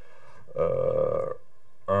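A man's drawn-out hesitation sound, "uh", held steadily for under a second between short silences; speech starts again at the very end.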